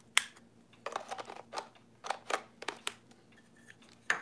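Camera body and telephoto lens being handled and fitted together: an irregular run of sharp clicks and light knocks, several a second, the loudest just after the start.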